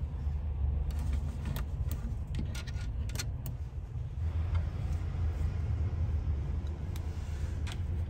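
Low, steady rumble of the parked coach's engine idling, with a cluster of light plastic clicks in the first few seconds and more near the end as the overhead reading-light buttons are pressed.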